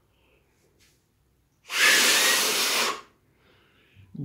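One hard, sustained blow of breath through a black foam face mask at a tea-light candle flame, a rush of air lasting just over a second, starting about one and a half seconds in. The blow barely stirs the flame: the foam mask lets little air through.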